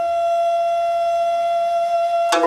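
Nanguan ensemble holding one long, steady note, carried by the end-blown bamboo xiao flute; the plucked pipa and sanxian are silent until just after.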